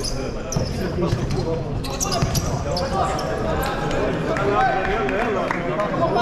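Futsal being played on a sports hall floor: scattered kicks and thuds of the ball and the squeak of players' shoes, echoing in the hall, with spectators talking nearby.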